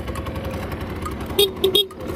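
Honda Gyro Up's 50cc two-stroke engine idling steadily, with three short loud beeps in quick succession near the end.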